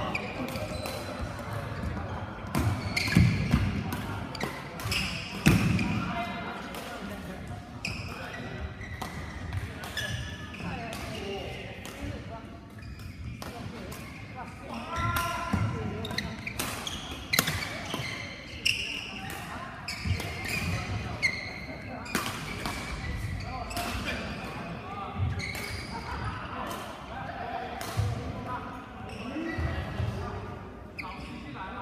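Badminton rallies: sharp racket-on-shuttlecock hits at irregular intervals, mixed with players' footfalls on the court floor and voices chattering around the hall.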